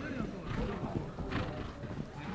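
Horse's hoofbeats on the riding arena, with spectators' voices chattering.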